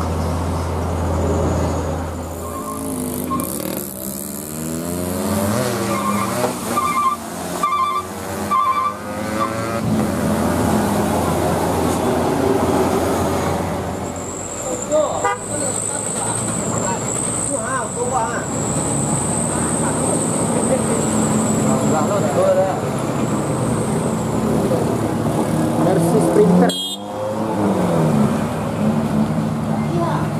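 Heavy traffic on a steep mountain road: truck and van engines running and pulling uphill, with a run of short horn toots a few seconds in and people's voices in the background.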